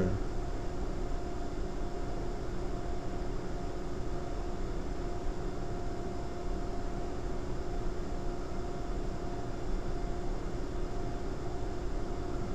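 Steady hum and hiss of background room noise, with two faint steady tones running under it.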